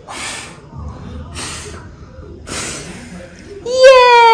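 Three short puffs of breath blown at a jar candle flame, about a second apart, putting the candle out. Just before the end, a loud, long high-pitched voice cries out.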